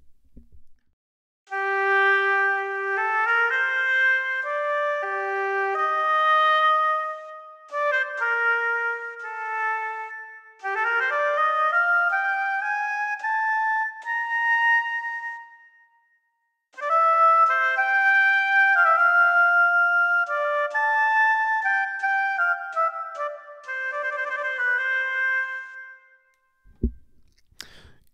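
Audio Modeling SWAM virtual oboe playing a slow, legato solo melody in three phrases, with short breaks about 8 and 16 seconds in.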